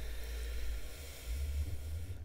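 A person drawing a long, slow breath in through the nose, a soft hiss of air that fades near the end, over a faint low hum.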